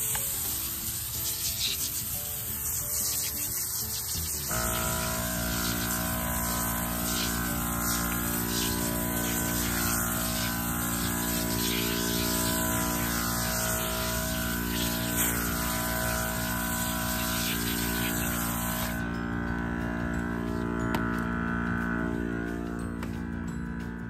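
Hand-pump foam sprayer hissing steadily as it lays foam cleaner onto a wheel and tyre, stopping about three seconds before the end. Soft background music with long held notes comes in about four seconds in.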